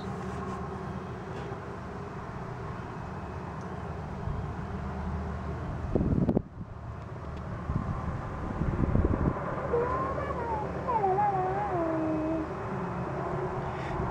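Steady low outdoor rumble, with a short run of wavering, rising and falling cries about ten to twelve seconds in.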